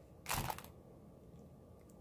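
A short crinkle of plastic packaging being handled, about a quarter second in and lasting about half a second, then faint room tone.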